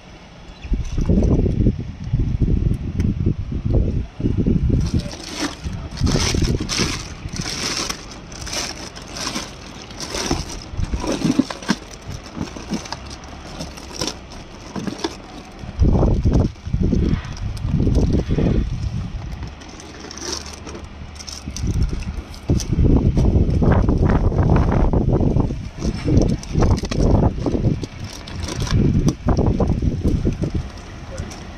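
Plastic fish bag crinkling and crackling as it is handled and untied, with water sloshing and low, uneven bursts of handling noise on the microphone.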